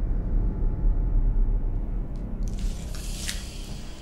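A deep, loud rumble swells in and holds, like a horror-film sound effect, then eases as a rustling hiss rises over it about halfway through.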